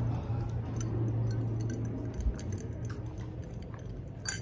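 Soft mouth sounds of someone sipping and tasting a tea, over a low steady hum that fades a little past halfway, with a few faint clicks and one small knock.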